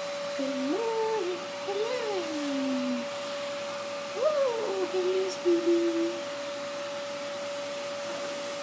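A person's voice softly cooing in long sliding tones, twice, over a steady high hum held at one constant pitch.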